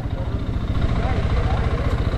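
Motorcycle engine idling steadily at the roadside, its low firing pulses close to the microphone.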